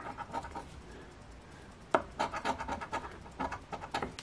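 A coin scratching the coating off a scratch-off lottery ticket in quick, rapid strokes: a short run of scrapes, a pause of about a second, then a longer run.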